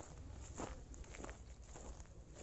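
Faint footsteps of a person walking, a few soft, irregular steps.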